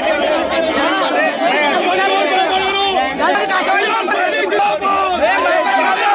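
A crowd of men talking loudly and shouting over one another in a dense, agitated babble of overlapping voices.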